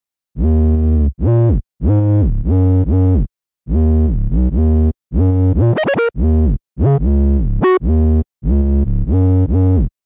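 Trap 808 bass playing a melodic line on its own, dry and not yet EQed: short deep notes with full low end, several gliding up or down in pitch, with a quick run of rising notes about six seconds in.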